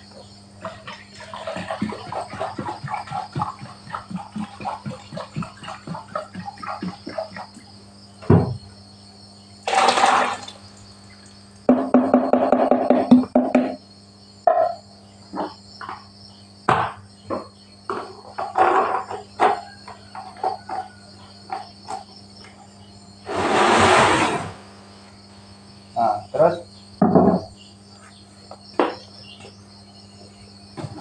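Plastic chemical jugs and containers being handled and shifted: a run of light knocks, taps and clatter, with two louder rustling bursts about a second long, one about a third of the way in and one near three-quarters. A steady insect chorus runs underneath.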